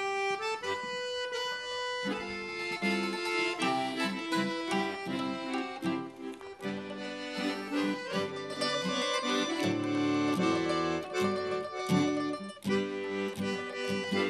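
A piano accordion, mandolin and acoustic guitar trio playing a medley of Australian folk tunes, with the accordion carrying the melody. Held notes open it, and the full rhythmic accompaniment comes in about two seconds in.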